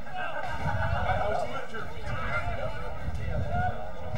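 Distant voices shouting and calling across an open football ground as players contest the ball and tackle, over a low rumble.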